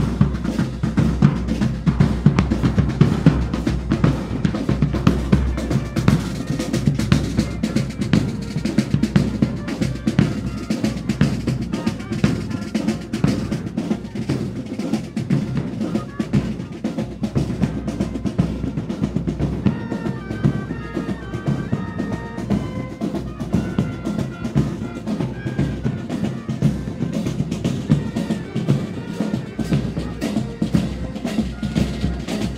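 Joint Services military marching band's drum line playing a steady cadence and rolls on snare and bass drums. A melody of short high notes joins in about two-thirds of the way through.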